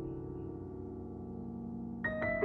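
Solo piano: a held chord rings on and slowly fades, with no new notes struck.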